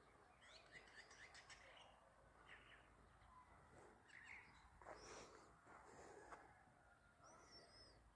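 Near silence, with faint scattered bird chirps and a brief warbling call near the end.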